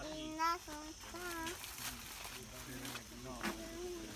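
A young child's voice making wordless, wavering sounds in short bursts during the first second and a half, then again briefly near the end.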